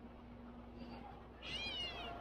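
A single short mewing, meow-like call about a second and a half in, rising then falling in pitch, over faint steady outdoor background.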